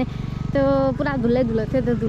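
A person's voice with long held, wavering pitches, over a steady low rumble.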